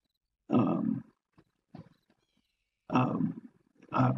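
A man's voice making two drawn-out hesitation sounds, filler 'uh'-like noises, one about half a second in and one about three seconds in, with a few faint ticks between them.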